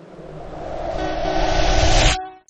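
A rising whoosh sound effect with a deep rumble, swelling steadily louder for about two seconds and cutting off suddenly.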